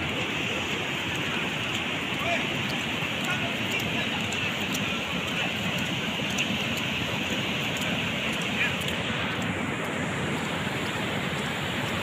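Steady rushing of muddy flash-flood water pouring across and over a road.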